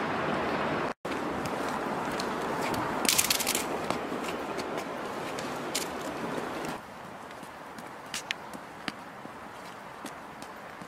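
Steady outdoor street noise at night, an even hiss with a few scattered clicks and scrapes; it becomes noticeably quieter about two-thirds of the way through.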